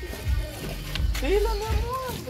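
A voice speaking, saying "bien" near the end, over music playing in the background.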